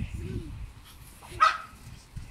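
A single short, high-pitched bark from a small Brussels Griffon about one and a half seconds in, over low rumbling noise.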